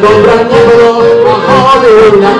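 A man singing a Yiddish folk song, one long held note that wavers and bends near the end, over chords from a Baldoni piano accordion.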